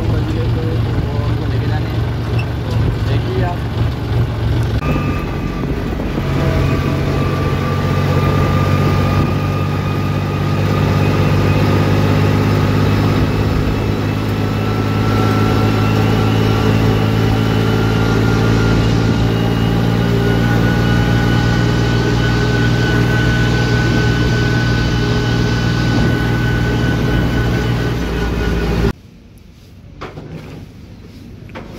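Tractor's diesel engine running steadily under way on a road, its pitch stepping up a few seconds in as it gathers speed and then holding even. The engine sound cuts off abruptly near the end.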